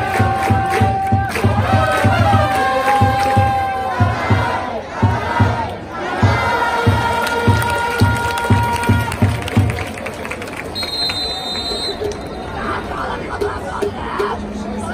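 Baseball cheering section's trumpets and bass drum playing a fight song while the crowd sings and shouts along. The drum beats about twice a second with long held trumpet notes over it. The band stops about two-thirds of the way in, leaving loose crowd shouting and chatter.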